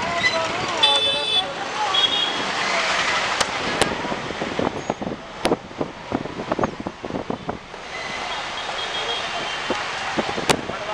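Busy town-street traffic heard from inside a moving vehicle: engines and road noise, with vehicle horns honking about a second in, again at two seconds, and through the last two seconds. A run of short knocks and rattles in the middle.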